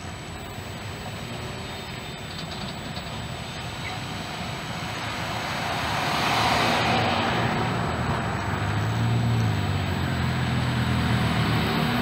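Cars driving across the railroad crossing close by. Tyre noise swells to a peak about six to seven seconds in as one passes, and a low engine hum follows.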